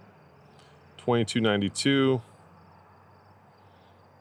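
Insects chirping in the background: a faint, rapid pulsed trill, high in pitch, going on steadily. A man's voice speaks briefly about a second in.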